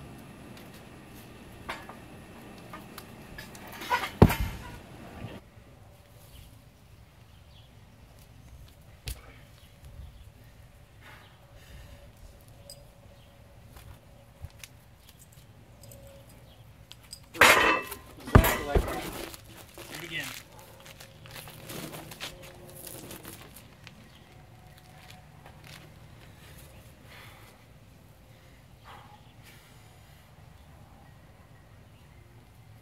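Atlas stone heaved over a bar and dropped onto a wooden platform: heavy thuds, one about four seconds in and a cluster of them about eighteen seconds in, against a low background.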